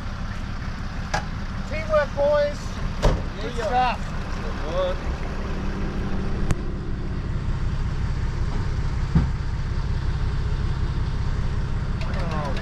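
Isuzu tipper truck's diesel engine running steadily under load, towing a wrecked car up a boat ramp on a chain, with a few sharp knocks along the way.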